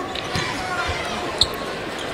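Basketball being played on a hardwood arena court: the ball bouncing and sneakers squeaking, with one short, sharp squeak about one and a half seconds in, over a steady arena hubbub.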